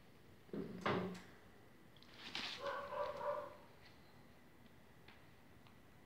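English Cocker Spaniel puppies, about 25 days old, vocalising: a short low yelp about half a second in, then a higher, held whine of nearly a second around two and a half seconds in.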